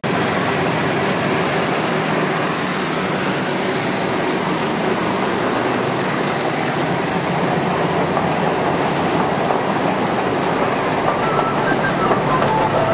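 PeruRail train passing close by, its diesel locomotive and passenger carriages making a steady rumble of engine and wheels on the track.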